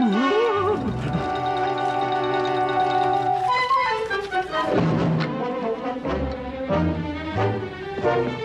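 Orchestral film score with brass: a sustained chord for the first few seconds, then short accented brass chords repeated in the second half.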